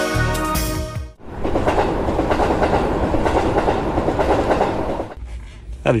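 Instrumental music cuts off about a second in, followed by about four seconds of a train running along the rails, a steady dense noise that drops away near the end.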